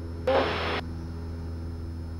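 Cessna 172 engine and propeller at climb power, a steady low drone in the cabin as heard through the headset intercom. A short burst of sound cuts in briefly about a quarter of a second in.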